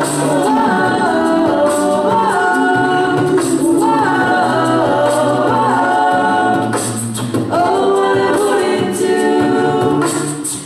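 Female a cappella group singing in close harmony into microphones, several voices holding sustained chords over a low sung bass line, with a brief dip in loudness about seven seconds in.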